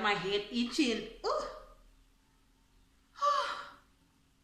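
A woman's excited wordless vocal reactions: a string of voiced exclamations for about the first second and a half, then a short breathy cry with falling pitch, like a gasp or sigh, about three seconds in.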